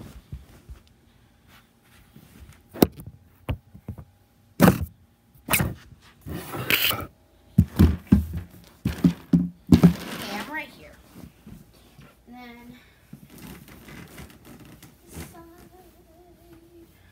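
Household items being handled and set down: a series of sharp knocks and thumps with some rustling, busiest from about seven to ten seconds in, as a plastic storage bin is moved close by.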